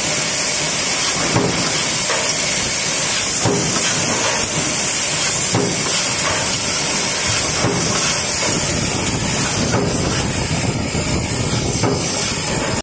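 Stamping press running a progressive deep-drawing die on steel strip. Each press stroke gives a knock, repeating about every two seconds over a steady loud hiss of machine noise.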